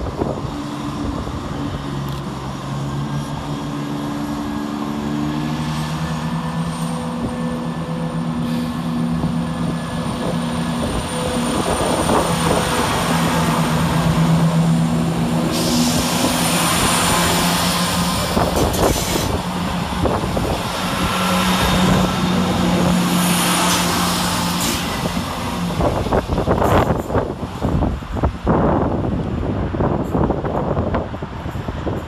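Two coupled Class 170 Turbostar diesel multiple units departing, their underfloor diesel engines working hard, with the engine note stepping up in pitch as the train accelerates. Wheel and rail noise swells as the coaches pass close by, with a run of clacks near the end.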